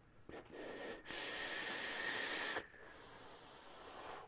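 A long draw on a brass tube-style e-cigarette: a steady airy hiss of air pulled through the atomizer, with a faint thin whistle in it. It lasts about a second and a half, then stops abruptly as he holds the vapour.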